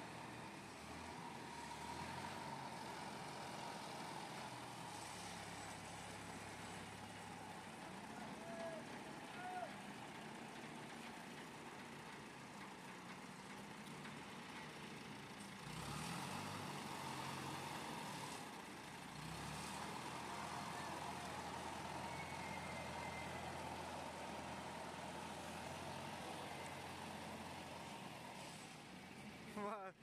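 Diesel engine of an Escorts Hydra 12 pick-and-carry crane running steadily as the crane drives and works, with louder stretches around the middle.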